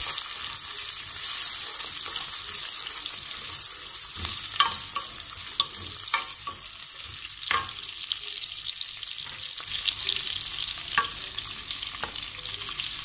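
Onion, green chillies and whole spices sizzling in butter and oil in a metal pot: a steady frying hiss. A utensil stirring them knocks against the pot now and then.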